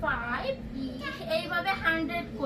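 Young children's voices: playful high-pitched vocalizing and chatter without clear words, in short bursts that rise and fall in pitch.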